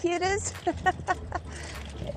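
A man talking over a steady low rumble from riding a bicycle on a brick paver path. The talking stops partway through, leaving only the rumble.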